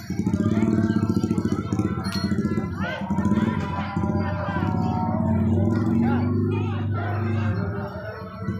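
Several people's voices over jaranan accompaniment music, a continuous loud mix with no single sound standing out.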